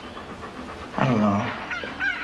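A husky panting, with a short, low voice-like sound that falls in pitch about a second in.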